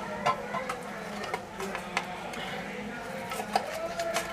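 Light scattered clicks and taps of an opened tin can and a plastic container being handled as canned stewed meat is shaken out of the can, over a faint steady hum.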